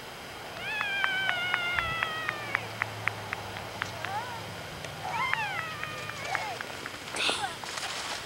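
A child's high-pitched drawn-out squeals: one long call sliding slowly down in pitch, a second shorter one a few seconds later, and a brief shriek near the end.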